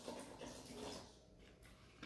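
Faint sound of vinegar being poured from a plastic jug into a stainless steel bowl of blended pepper sauce, dying away about a second in.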